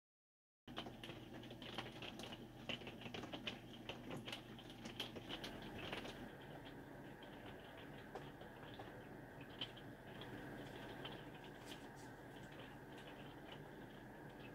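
Faint quiet interior: a low steady hum with light, irregular small clicks and ticks, busy at first and thinning out about halfway through.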